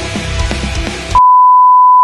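Music cuts off abruptly about a second in and is replaced by a loud, steady, single-pitch test-tone beep, the tone that goes with television colour bars.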